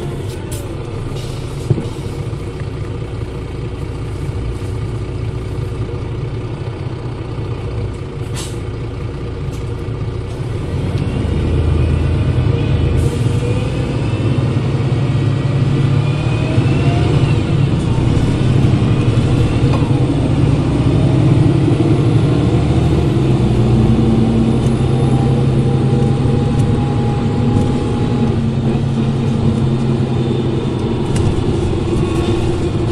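Mercedes-Benz OM906 LA six-cylinder turbodiesel of a Citaro O530 city bus, heard from the engine compartment. It runs steadily at light load for about ten seconds, then grows louder under load as the bus accelerates, with whines rising in pitch. There is one sharp click about two seconds in.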